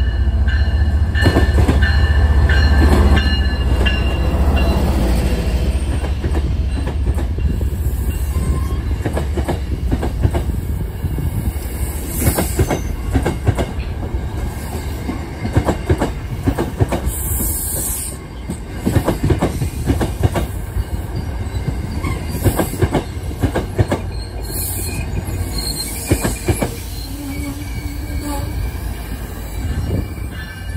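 MBTA diesel commuter train passing close: a loud low locomotive engine rumble in the first few seconds, then bilevel coaches rolling by with repeated wheel clicks over rail joints and a few brief high wheel squeals.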